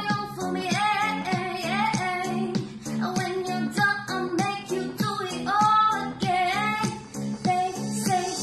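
A woman singing a pop song cover over a backing track with a steady beat and held low chords.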